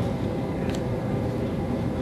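Steady low hum of the room's background noise, with one small click about three-quarters of a second in.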